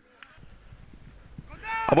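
Faint outdoor field ambience: a low hiss and rumble, with a faint short call about a quarter of a second in. A man's commentary voice starts near the end.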